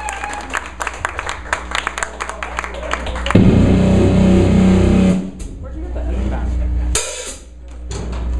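Full band loosening up: scattered drum and cymbal taps, then a loud, low amplified guitar chord rings for about two seconds, and a single short cymbal crash near the end.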